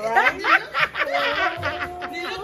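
Laughter in a few short bursts among playful voices.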